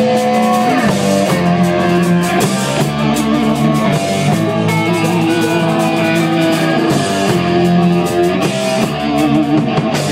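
Rock band playing live: electric guitars and bass over a drum kit, loud and steady.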